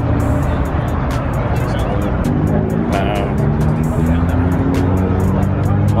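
A car engine runs with its revs rising slowly over the second half, under background music, with some voices in the crowd.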